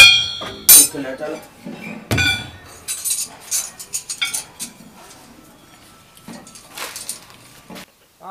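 Tools striking the iron parts of a fodder chaff cutter, sharp ringing metal clanks: a loud strike right at the start, another just under a second in and a third about two seconds in, followed by lighter clinks.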